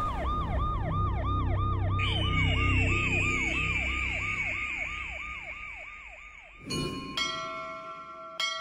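Siren wailing in fast repeated downward sweeps, about three or four a second, fading away over about six seconds above low music. Near the end a bell is struck and rings on.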